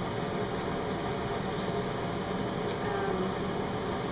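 Steady background noise, an even hum and hiss like a running fan, with one faint click a little under three seconds in.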